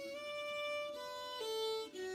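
Fiddle played slowly with the bow: a long held note, then two lower notes stepping down near the end, each sustained cleanly.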